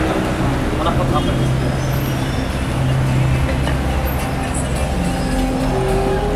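Busy city street ambience: passing and idling cars, voices of people nearby, and music mixed in.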